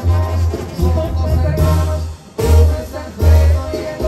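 Live Sinaloan banda music played through a concert sound system: trumpets and the rest of the brass over a heavy tuba bass, in an instrumental passage. The bass line goes in short separate notes and drops out briefly a little past two seconds in.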